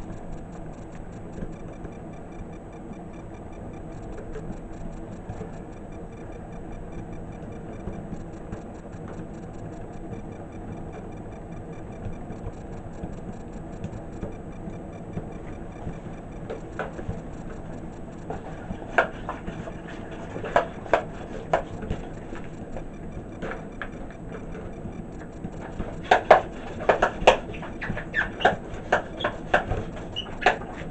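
Burning synthetic satin fabric crackling and popping, starting about halfway and bunching into a loud run of sharp cracks near the end, over a steady background hum with faint regular ticking.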